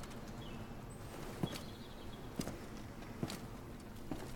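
Three slow, evenly spaced footsteps of a man in plate armour walking across the room toward the camera.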